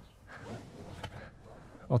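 Faint rustling of a hand moving over and shifting an upholstered caravan sofa seat cushion, with a light click about a second in.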